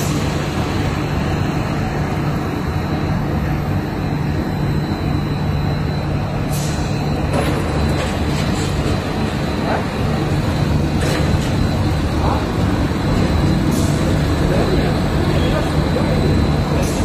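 Bedding production machinery running steadily: a dense, even hum of motors and air-handling fans with a thin high whine. A few short sharp clicks or knocks are scattered through it.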